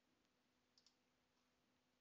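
Near silence, with a faint double click of a computer mouse a little under a second in.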